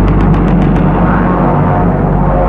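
Documentary background music: sustained low tones, with a quick run of about seven light taps in the first second.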